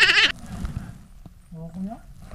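A man's laugh, high and wavering like a bleat, trailing off about a third of a second in. Shortly before the end a brief rising vocal sound follows.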